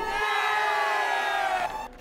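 A sound-effect stinger: one long, held shout-like cry with many overtones, sagging slightly in pitch, lasting nearly two seconds and stopping shortly before the end.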